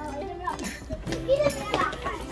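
A group of children shouting and calling out as they set off running, in short high bursts of voice, with a few short knocks among them.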